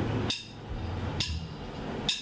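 Drumsticks clicked together to count in a rock band: two sharp wooden clicks a little under a second apart, over a low amplifier hum.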